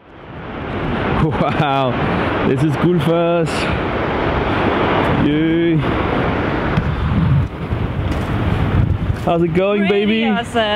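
Wind buffeting the microphone over the steady rushing of Gullfoss waterfall, fading in during the first second. People's voices come through it in short stretches.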